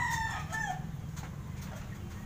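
A rooster crowing, a long held call that bends down in pitch and ends under a second in, over a low steady hum.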